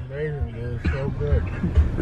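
Quiet, indistinct voices of people in a car, over the low rumble of the cabin.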